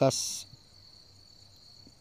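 A brief pause in a woman's voice-over: the hiss of the last word's 's' sound fades in the first half-second, then only a faint, steady high-pitched whine remains.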